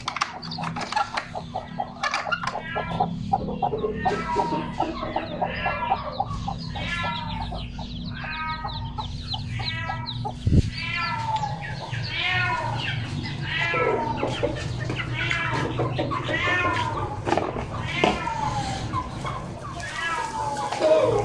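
Aseel chicks peeping over and over, many short chirps each falling in pitch, with a mother hen clucking low among them. A single sharp knock about ten and a half seconds in.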